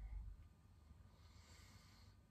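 Near silence, with a faint breath out through the nose in the second half, as a sip of beer is taken and swallowed.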